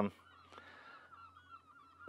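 Faint bird calls: a run of short, repeated, wavering notes.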